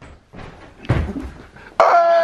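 A short, soft knock about a second in, then near the end a man's loud, drawn-out exclamation that falls in pitch, like a long "whoa".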